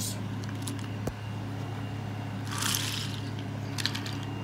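Toy trains being handled on a wooden railway layout: a sharp click about a second in, a brief scraping rustle a little before three seconds, and small clicks near the end, over a steady low hum.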